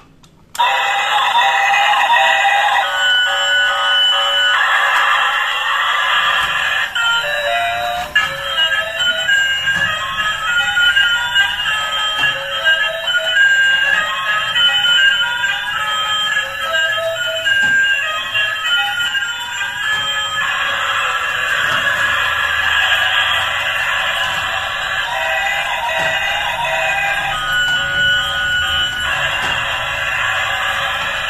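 Battery-powered toy steam train switched on about half a second in, playing a thin electronic melody from its small speaker.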